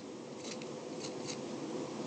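Faint scratching and tapping of a stylus writing on a tablet screen, a few short strokes, over a steady low room hum.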